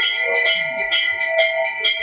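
Temple hand bell rung rapidly and without pause during the lamp-waving worship (aarti), about three to four strokes a second, its ringing tones carrying on between strokes.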